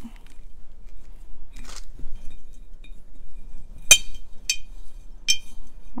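A glass jar clinks three times, less than a second apart, each strike ringing briefly, after a soft rustle of dry moss filler being handled.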